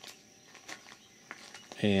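Quiet outdoor background with a few faint, soft ticks, then a man's voice begins near the end.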